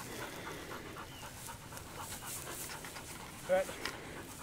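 A hunting dog panting softly and rhythmically.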